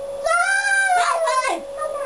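A person's high-pitched, meow-like vocalising as a puppet voice: one long call that rises and falls, then shorter gliding calls. A steady tone hums underneath.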